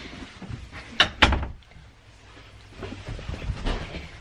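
A sharp knock about a second in, followed at once by a low thud, then faint low rumbling.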